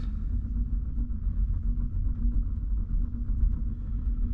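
Wood-chip fire burning in a small Super-Kalor stove with its door shut, drawing with a steady low rumble.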